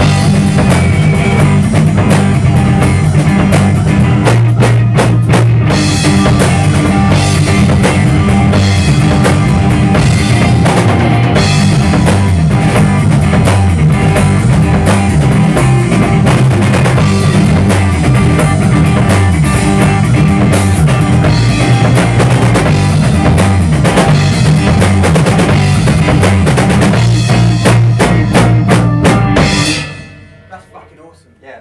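A rock band playing loud and close in a small rehearsal room, with electric guitar, bass guitar and drum kit running through the song's outro. It stops dead together right at the end.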